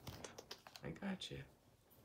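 A quick run of light, irregular clicks and taps through the first second and a half, with a short spoken word in the middle; it then falls almost quiet.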